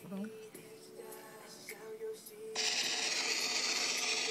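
Quiet background music, then about two and a half seconds in a drumroll starts suddenly and runs on steadily.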